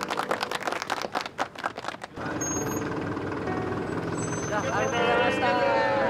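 A crowd clapping for about two seconds, which cuts off suddenly. After that a small flatbed truck's engine runs steadily at idle while people talk.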